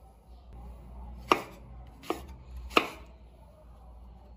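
A kitchen knife chopping on a bamboo cutting board: three sharp chops in under two seconds, the first and last loudest.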